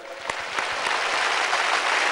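Studio audience applauding: many hands clapping together in a steady wash that swells over the first half second.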